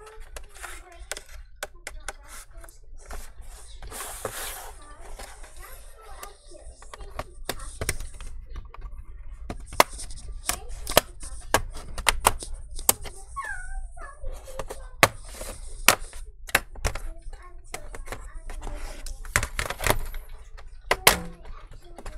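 Plastic bottom cover of an HP 17t-cn000 laptop being pried loose around its edge with a thin metal pry tool: a run of sharp clicks and snaps, thicker from about seven seconds in, with scraping between them.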